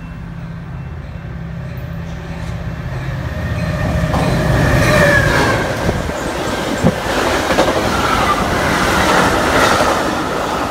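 Metra diesel commuter train running through the station without stopping. The locomotive's engine drone builds and goes by about five seconds in. The rush of stainless-steel bilevel coaches follows, with faint wheel squeal and one sharp clack of wheels over a rail joint about seven seconds in.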